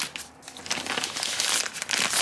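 Thin translucent wrapping film crinkling as it is pulled and slid off a boxed camera carrying case, getting fuller after about half a second.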